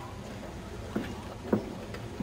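Steady background noise of a large indoor sports hall, with two short knocks about a second in and half a second later, the second louder.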